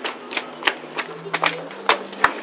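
A string of sharp, irregular clicks, about six in two seconds, over a faint steady hum.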